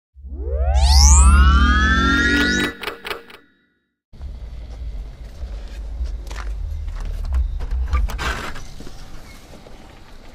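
A synthesized intro sting: several tones sweep upward over a heavy bass for about three seconds, then cut off abruptly. After a short silence comes a low rumble with a few knocks and clicks as a door is opened.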